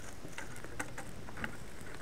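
Freshly caught Finnish gap fire of stacked logs crackling, with scattered, irregular small snaps and pops.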